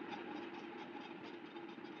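Faint, steady hiss with a low hum underneath: the background noise of the recording microphone.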